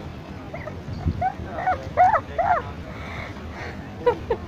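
Several short, high-pitched yelps in quick succession, starting about a second in and lasting a second and a half, each rising and falling in pitch, over steady low background noise.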